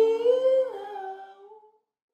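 The last held, hummed vocal note of a ukulele song cover, with a lower harmony line beneath it. The note lifts slightly, then falls, and fades out by about a second and a half in.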